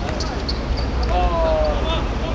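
A football kicked and bouncing a few times on an artificial-turf pitch, with a player's drawn-out shout about a second in.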